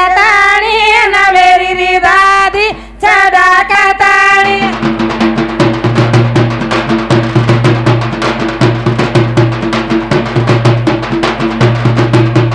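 A woman singing a Banjara folk song over drum accompaniment. About four seconds in the singing stops, and the drums carry on alone in a fast, even beat over a steady low tone.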